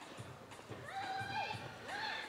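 Faint distant voices, high-pitched calls whose pitch slides down and up, twice.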